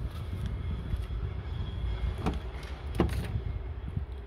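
Rear passenger door of a Mercedes GLS350d being unlatched and opened: two sharp clicks from the handle and latch, about two and three seconds in, over a low steady rumble.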